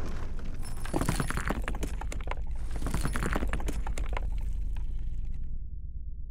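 Sound effect of a wall crumbling: chunks of rubble and debris clattering down over a low rumble, the clatter dying away near the end.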